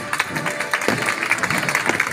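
Music with a crowd of spectators starting to clap and applaud. The clapping thickens and grows louder in the second half.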